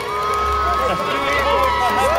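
Large outdoor crowd shouting and cheering, many voices overlapping and rising and falling in pitch, over a steady high held tone.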